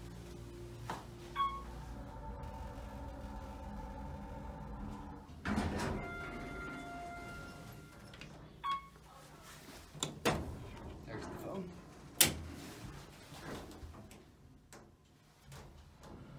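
Clunks and clicks of the elevator car's hinged metal emergency-phone cabinet door being handled, the sharpest knock about twelve seconds in, with two short beeps and a brief held tone earlier on.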